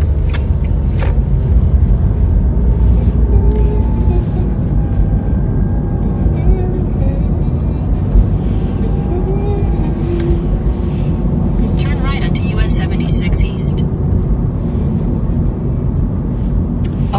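Car cabin noise while driving: a steady low rumble of road and engine. A short run of quick, high ticks comes about three-quarters of the way through.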